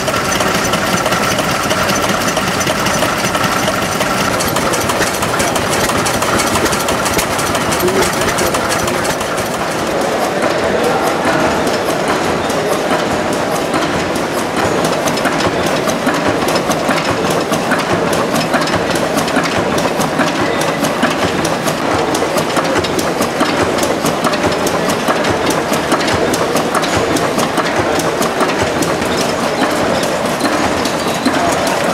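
Vintage stationary engines running with a dense, steady mechanical clatter of firing strokes and valve gear. The sound changes about ten seconds in as a different engine takes over.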